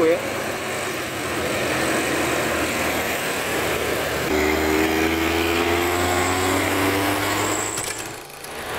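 Passing road traffic: a truck laden with logs and motorcycles going by close. From about four seconds in a steady engine hum rises slightly in pitch, then stops abruptly near the end.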